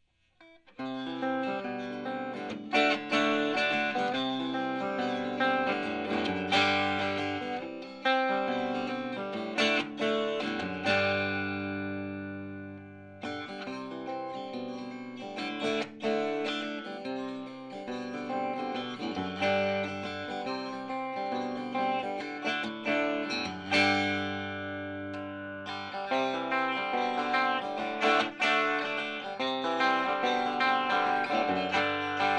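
Telecaster-style electric guitar with ReWind Electric 1966 Tele pickups, played through a Fender blackface amp and Jensen speaker, with a bright, twangy tone. Picked notes and chords start about a second in. Chords are left to ring out and fade near the middle and again toward the end.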